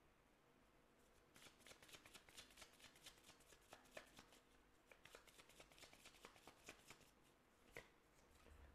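A deck of oracle cards shuffled by hand, softly: a quick run of light card clicks and flutters starting about a second in and stopping just before the end.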